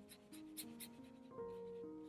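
Quiet background music of slow, held notes, with several faint, scratchy strokes of a watercolour brush on paper.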